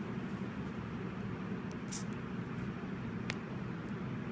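Steady low background hum and hiss with a couple of faint plastic clicks, one about two seconds in and a sharper one near the end, as small red two-pin battery connector plugs are pushed together.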